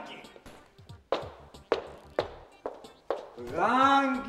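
Four sharp knocks, spaced about half a second to a second apart, then a voice starting up near the end.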